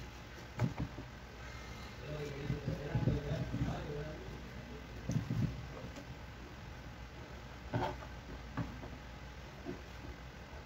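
Kitchen knife cutting slab bacon into cubes on a plastic cutting board: a few scattered soft knocks as the blade goes through the fat and meets the board. A faint voice sits in the background about two to four seconds in.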